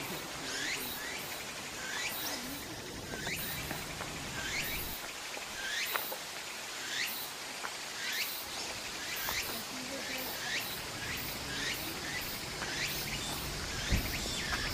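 Repeated short, high wild animal calls, each falling quickly in pitch, coming about once or twice a second over a steady high hiss in the background.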